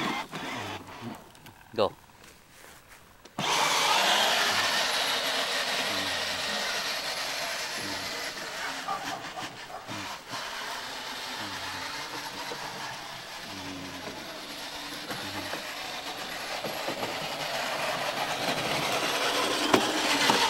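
Battery-powered ride-on toy Harley motorcycle running on its faster speed setting: the electric drive motor whirs as the plastic wheels roll over dry grass and dirt. It starts suddenly a few seconds in and keeps going, easing a little in the middle.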